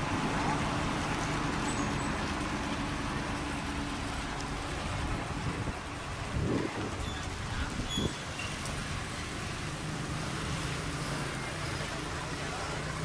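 A cargo boat's engine running steadily over the rush of water, its hum fading in the middle and returning near the end, with two short louder noises about six and a half and eight seconds in.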